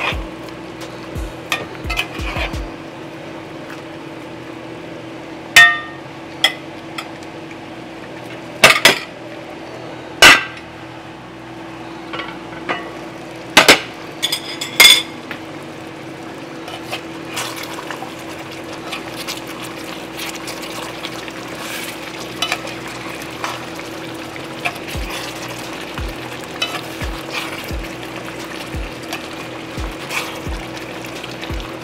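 Metal spoon stirring chicken pieces in curry sauce in a metal pot, clinking and scraping against the pot, over a steady sizzle of the cooking. The loudest clinks come in a cluster from about 5 to 15 seconds in, with lighter taps after.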